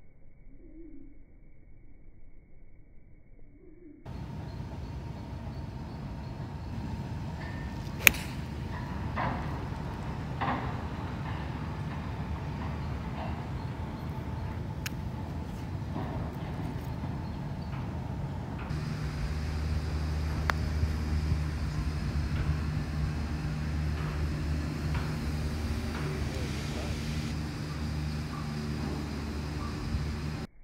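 A golf iron striking the ball once, a sharp crack about eight seconds in, against open outdoor noise with a few smaller clicks. From about two-thirds of the way through, a steady low hum joins it.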